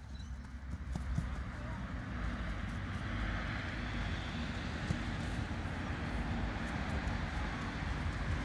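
Steady outdoor rumble and hiss, with faint, irregular footfalls of a runner's studded boots on grass.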